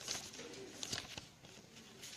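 A faint bird call, with a few soft clicks about a second in.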